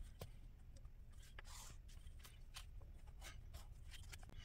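Faint felt-tip marker drawing lines on journal paper along a steel ruler, with a few light scrapes and taps as the ruler is shifted on the page.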